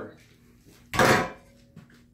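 A propane beer-brewing burner stand set down on the floor: one short metallic clatter about a second in, then a faint knock near the end.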